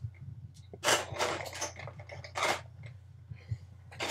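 3D-printed PLA trimmer comb attachments clattering in a plastic bin as a hand rummages through them: a few short rattling bursts.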